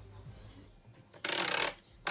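Thermomix in its kneading (dough) mode, starting about a second in: a short half-second burst of the motor and blade churning flour and water into a dough in the mixing bowl.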